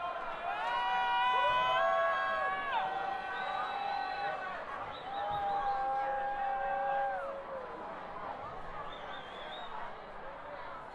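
Concert audience between songs: crowd chatter with several long, drawn-out calls from audience members, loudest in the first three seconds and again around five to seven seconds in.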